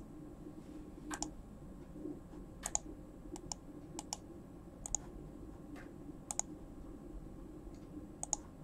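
Computer mouse clicks, scattered and irregular, several in quick pairs, as a slideshow's right-click and pointer-option menus are opened and chosen from. A steady low hum lies under them.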